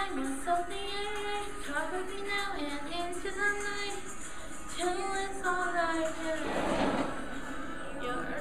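A pop song with a woman's singing voice over backing music, the melody carried in long, held notes.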